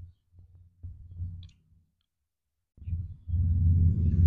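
Low rumbling noise on the phone's microphone, coming in uneven gusts. A short click at the start, a low rumble lasting about a second and a half, a pause, then a louder rumble from about three seconds in.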